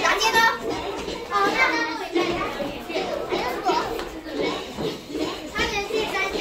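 Many young children chattering and calling out together, with music playing underneath.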